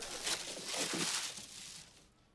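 Tissue paper rustling and crinkling as a gift box is pulled out of its wrapping, fading out near the end.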